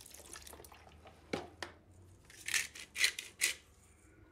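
Milk poured from a carton into a mixing bowl, with two light clicks about a second and a half in and three short splashy bursts near the end.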